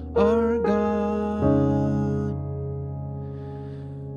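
Piano keyboard playing sustained gospel-jazz chords: one chord sounds just after the start, another about half a second later and a third about a second and a half in. Each is held under the sustain pedal and slowly fades.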